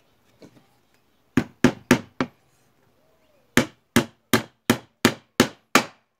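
Hammer driving small nails into pallet-wood slats. Four quick blows come about one and a half seconds in, then after a pause a run of seven evenly spaced blows, about three a second.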